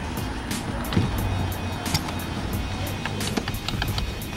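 Music playing at low volume in a car's cabin, over the car's low running hum.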